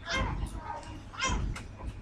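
A woman's voice giving two short, high-pitched cries, one near the start and one about halfway through, with the pitch bending in each.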